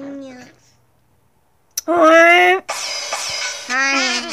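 Wordless cartoon-character crying voiced by a person. A held wail fades out; after a second of near silence comes a loud wail, then a harsh hissing cry, then more wailing near the end.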